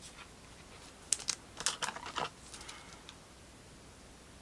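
Light clicks and taps of trading cards and plastic card holders being handled on a table: a few sharp clicks a little after a second in, a quick run of them for about half a second after that, then a faint rustle.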